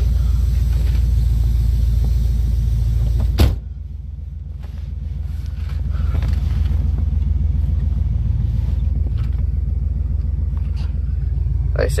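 1967 Dodge Coronet's engine idling with a steady, even low pulse, heard from inside the car. About three and a half seconds in there is a single sharp knock, as of the phone being set down, and the engine sound is muffled for a couple of seconds after it.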